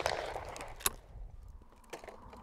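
The echo of a skeet shotgun shot fading away, then a single faint click just under a second in, leaving quiet outdoor ambience.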